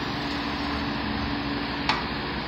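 Steady background hum holding one low, even tone, with a single sharp click near the end.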